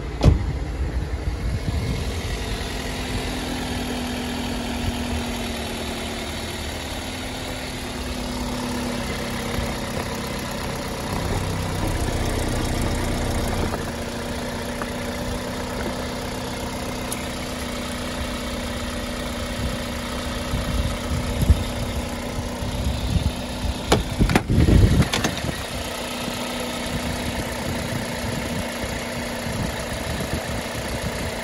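Toyota Corolla Verso's 1.6-litre four-cylinder petrol engine idling steadily, heard up close in the open engine bay. There is a sharp thump at the very start and a few knocks and bumps a little after the middle.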